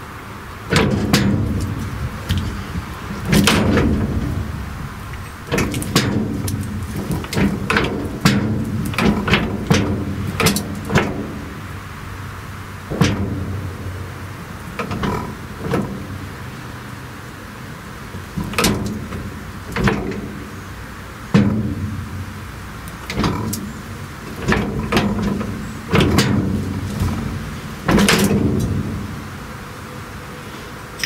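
Irregular metal clanks and knocks of a wrench working on the steel clutch band linkage of a Bucyrus-Erie 15B shovel. They come in clusters every second or two, each with a short ring.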